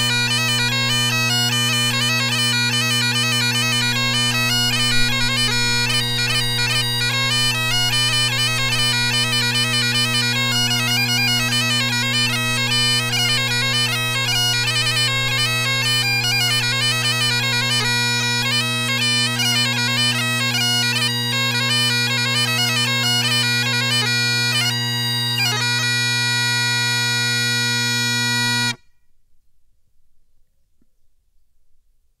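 Great Highland bagpipe (Boderiou XB5S with a wooden solo chanter and RedWood drone reeds) playing a quick Breton tune on the chanter over its steady drones. It ends on a long held note, and near the end the pipes cut off cleanly.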